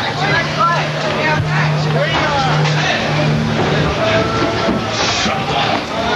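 Several people shouting and talking over one another, with a low steady hum under the first four seconds.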